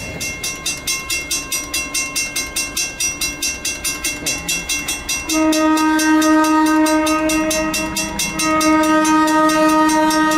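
Grade crossing warning bell ringing at about three strikes a second. About five seconds in, an approaching diesel locomotive's multi-chime air horn sounds a long blast, breaks off briefly, then sounds a second long blast over the bell.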